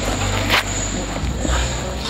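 Steady low rumble of outdoor background noise that swells a little past the middle, with one short hiss about half a second in.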